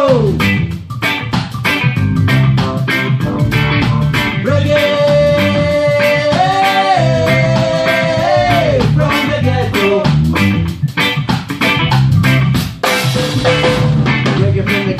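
Reggae band playing an instrumental passage: offbeat electric guitar chops, bass line, drum kit and keyboard, with a long held melody note in the middle.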